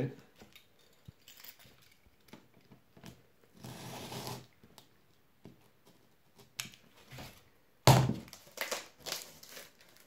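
A Stanley knife scoring corrugated cardboard against a straightedge: a scraping cut about four seconds in, with light clicks and rustles of the card. A sudden loud knock and rustle comes near eight seconds in as the cardboard is handled.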